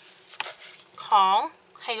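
Light knocks and a soft rustle as sheets of paper are shifted on a desk: a sharp click at the start and another about half a second in. A woman's voice follows a second in.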